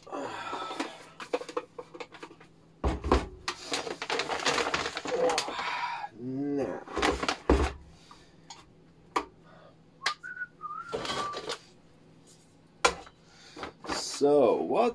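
Kitchen tap running into a steel pot for a few seconds, with knocks as the pot is handled and set down on an electric hot plate. A short whistle comes near the end.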